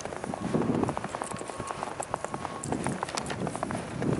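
Fresh snow crunching in a quick, irregular run of small crackles, with a few soft low thuds.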